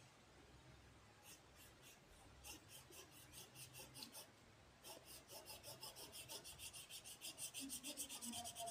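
Faint scratching of a marker tip on paper as a pentagon is coloured in with quick back-and-forth strokes, several a second. The strokes begin about a second in and grow quicker and louder in the second half.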